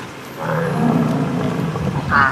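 American bison bellowing: one long, low roaring call that starts about half a second in and lasts to the end.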